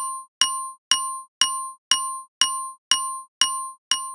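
A sampled glockenspiel strikes the same single high note over and over, about twice a second. Each hit is a bright metallic ring that dies away quickly.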